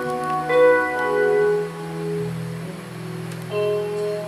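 Slow instrumental music on an electronic keyboard with an organ-like tone: a melody of held notes over sustained low chords, each note starting with a light bell-like attack.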